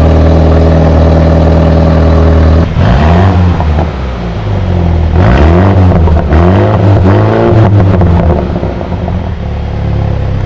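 BMW X2 M35i's turbocharged 2.0-litre four-cylinder engine heard at the exhaust tip: it holds steady revs, then from about three seconds in is revved several times in quick succession, each rev rising and falling in pitch.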